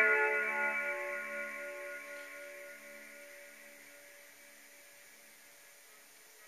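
Guitar chord left ringing after a strum, slowly dying away and fading almost to silence about four seconds in.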